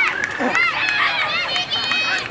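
Several children's voices shouting and calling over one another, high-pitched and overlapping.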